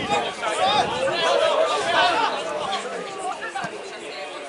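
Several people's voices talking and calling out over one another: chatter from people at an amateur football match.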